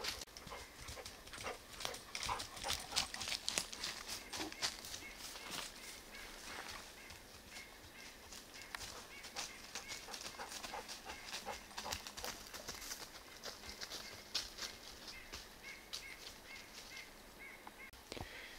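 Quiet outdoor ambience with faint, irregular clicks and crackles throughout. A soft high tone repeats in short beats in the second half.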